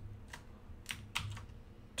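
Computer keyboard being typed on: about five separate, faint keystrokes at uneven spacing.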